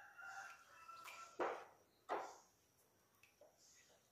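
Water poured from a plastic cup into coconut milk in a metal pan, a faint trickle in the first second. Then two short knocks, about two-thirds of a second apart.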